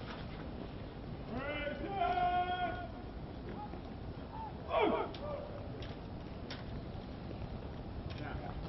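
Drill commander shouting a command to a formation of Marines: a long, drawn-out, almost sung preparatory word about a second and a half in, then a short, sharp command of execution near the five-second mark, both carrying in open air.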